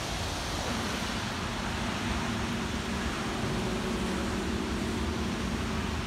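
Steady hiss of rain falling on wet pavement. About a second in, a steady low mechanical hum like a running engine or motor joins it.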